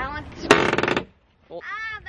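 Rear cargo door of a large SUV squeaking on its hinges as it is swung open: a loud grating creak about half a second in, then, after a short break, a squeal that rises and falls in pitch near the end.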